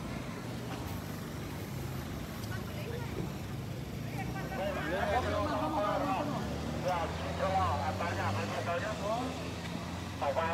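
A vehicle engine running steadily, with people talking from about four and a half seconds in.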